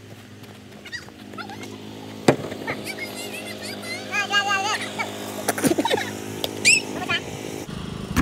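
People yelling and cheering outdoors, with loud wavering shouts about four to five seconds in and again near seven seconds. A steady low hum runs underneath and cuts off suddenly near the end. A couple of sharp knocks come through.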